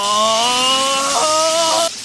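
Anime Chidori lightning sound effect: a loud electric buzzing and crackling over a rising tone that jumps higher about a second in. It cuts off abruptly near the end.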